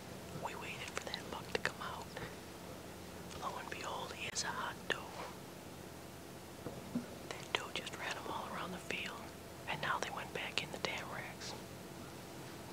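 A man whispering in two stretches of a few seconds each, with a pause of about two seconds between them.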